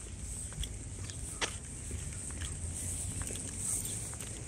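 Quiet outdoor ambience: a low wind rumble on the microphone under a steady high-pitched hiss, with a few faint, irregular taps of footsteps on a paved path.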